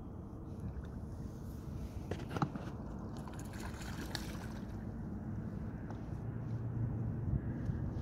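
Water lapping around a small fishing boat with a steady low rumble, and a single light knock about two and a half seconds in.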